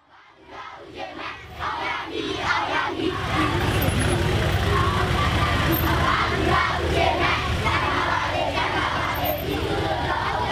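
Crowd of many overlapping voices fading in over the first few seconds and then holding steady, with a low vehicle rumble underneath.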